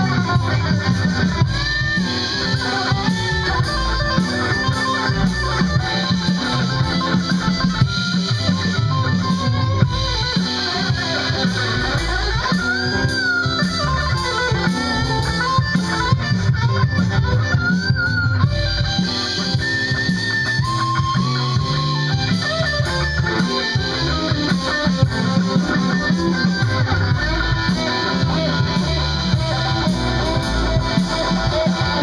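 A small live band, electric guitars over a drum kit, playing continuously at a steady loud level, with a few bent guitar notes in the middle.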